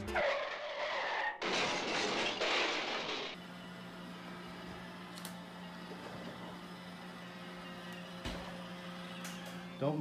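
A loud rushing noise for the first three seconds or so, which cuts off abruptly. Then comes a motor vehicle's steady running hum, holding one constant low tone.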